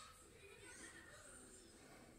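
Near silence: room tone, with a few faint, distant pitched sounds.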